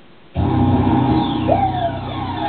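Loud pop music kicking in abruptly about a third of a second in, after a quiet start.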